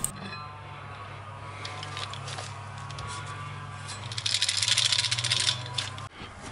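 Worn clutch basket of a 2006 Suzuki SV1000 being rocked by hand, metal on metal, with a few light clicks and then a dense, rapid rattle from about four seconds in to five and a half. The rattle comes from the loose damper springs and play in the basket's gear, the wear behind the bike's clutch noise and vibration.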